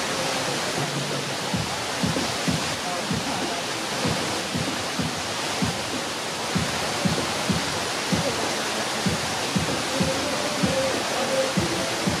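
Steady rushing of a waterfall, with short low thuds recurring irregularly beneath it.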